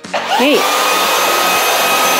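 Shark EVOPOWER SYSTEM NEO+ cordless stick vacuum switched on: its motor whine rises quickly in pitch as it spins up, then settles into a steady high tone over a rush of suction air.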